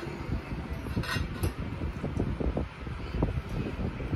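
A fork clicking and scraping faintly on a dinner plate during eating, over a steady low rumble.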